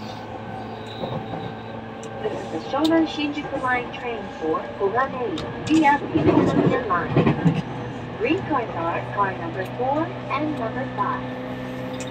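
E231 series electric commuter train running, heard inside the car as a steady low hum, with voices talking over it through most of the stretch.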